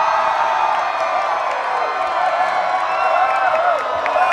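A large crowd cheering, whooping and screaming steadily with many voices at once.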